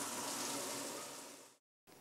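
Water running into a top-loading washing machine's tub: a steady hiss that fades out after about a second and a half and then cuts off.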